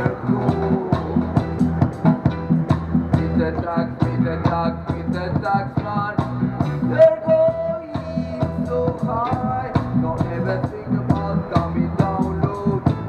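Reggae band playing live: a steady bass line and drum beat under a keytar melody, with one long held note about seven seconds in.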